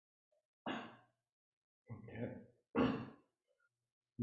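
A man sighing and breathing out audibly, three short breaths over about two and a half seconds, the last the loudest.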